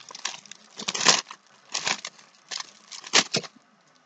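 Clear plastic packaging crinkling as it is handled and pulled at to get it open, in short bursts about once a second.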